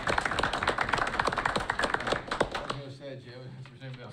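A room of people applauding, many hands clapping together. The clapping dies away about two-thirds of the way through, giving way to talk and a laugh.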